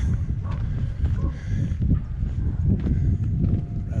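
Footsteps of a person walking on a country road, over a continuous, uneven low rumble.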